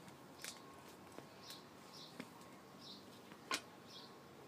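Faint small-bird chirps, short high calls repeated every half second to a second, with a few sharp clicks in between, the loudest one near the end.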